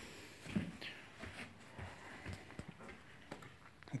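Faint footsteps on a freshly laid wooden plank subfloor, with scattered light clicks and knocks.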